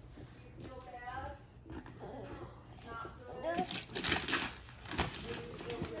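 Wrapping paper crinkling and tearing as a present is unwrapped by hand, in short rustles that are strongest about four and five seconds in, with soft, quiet voices now and then.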